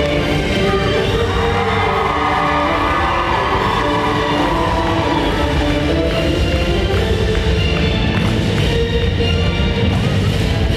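Recorded music for a high kick dance routine playing loudly through a gymnasium sound system, with long held notes.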